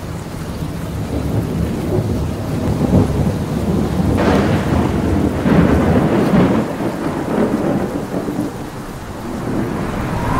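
Thunderstorm: a heavy, low thunder rumble over steady rain, building and swelling loudest about four to seven seconds in.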